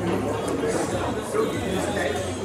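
Many people talking at once in a large hall, an indistinct murmur of overlapping voices over a steady low hum.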